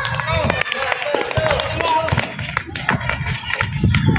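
Players' voices calling out during a basketball game on a concrete court, mixed with irregular sharp knocks and slaps of feet and the ball on the concrete.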